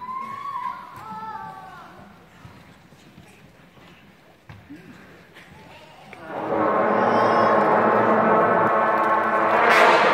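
Children's brass band of cornets, tenor horns and plastic trombones sounding one long held chord from about six seconds in, swelling just before it is cut off at the end.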